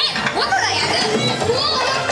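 Attraction show audio: several high-pitched, excited children's voices of the Lost Boys characters calling out, over background music.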